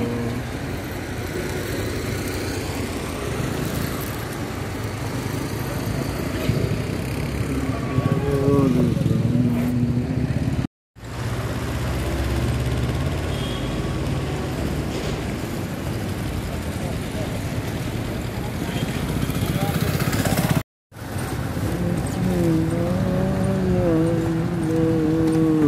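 Street noise: a steady rumble of vehicles with indistinct voices, broken by two brief silent gaps about eleven and twenty-one seconds in.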